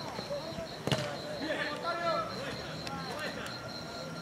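Distant shouting and calling of voices across a football pitch, with one sharp thud of a football being kicked about a second in.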